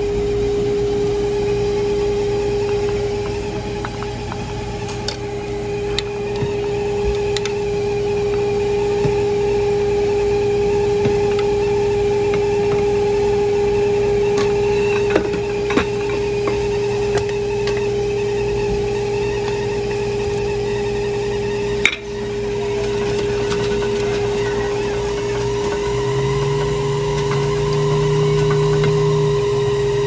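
A steady, pitched machine hum runs throughout, with a lower hum joining in near the end. A few sharp clicks of metal spoons against the steel topping containers and dish come through over it.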